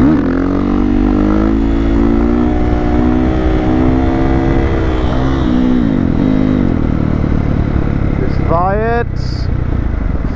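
Husqvarna FE 501 single-cylinder four-stroke with an FMF full exhaust system pulling hard under throttle, revs climbing at the start and held high. The revs dip briefly about five to six seconds in, then sweep up sharply again near the end.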